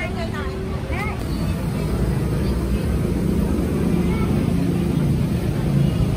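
Busy street ambience at a roadside food stall: a steady low rumble that grows slightly louder, with people's voices in about the first second.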